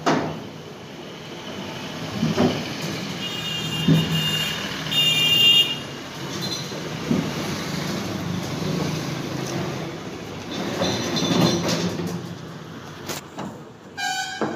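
Heavy steel paper plate machine being pushed and dragged across a truck's metal cargo bed: scraping and a short metallic squeal, with several knocks, over a steady low rumble.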